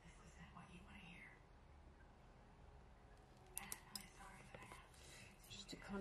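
Near silence, with faint murmuring under the breath near the start and a few soft clicks and rustles from a paper sticker sheet being handled in the second half.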